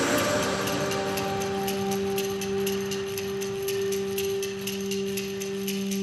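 Background music: a loud drum beat drops out at the start, leaving held notes over a light, quick ticking beat.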